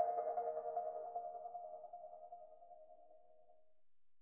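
The last chord of an electronic rock song, held notes dying away over about three and a half seconds into near silence.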